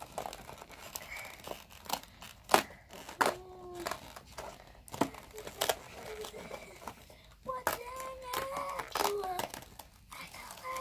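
Cardboard door of a toy advent-style box being punched in and torn open by hand: a scattered series of sharp rips and crinkles, with packaging crinkling as the flap comes free.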